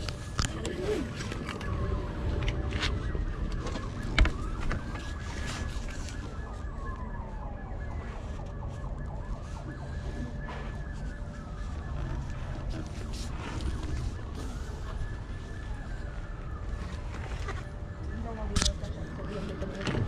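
A distant emergency-vehicle siren on a slow wail, its pitch rising and falling about every four to five seconds, over a low outdoor rumble. A few sharp knocks from the framed picture being handled, the loudest about four seconds in.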